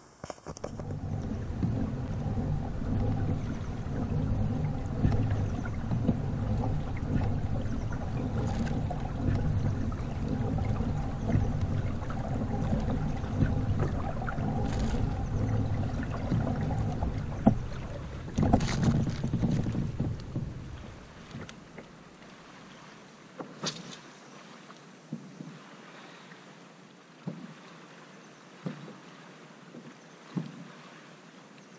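Kayak on a lake picked up by a GoPro on the bow: a loud, low rumbling noise on the microphone for about twenty seconds, with a couple of knocks near the end of it. It then cuts out, leaving quiet water sounds and a few light clicks.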